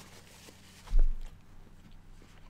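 A person quietly chewing a pickled quail egg, with one dull, low thump about a second in.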